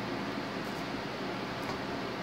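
Steady background hiss of room tone, even throughout, with no distinct sound events.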